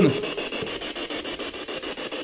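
A steady scratchy, rubbing noise with faint rapid ticking running through it.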